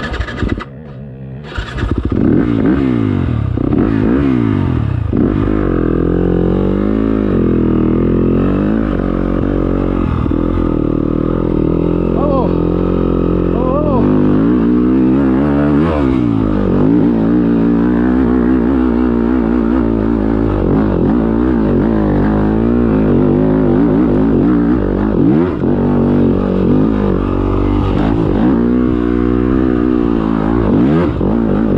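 Yamaha dirt bike engine revving up and down as it is ridden along a hilly dirt trail, its pitch rising and falling again and again with throttle and gear changes. The sound drops briefly in the first couple of seconds, then runs loud.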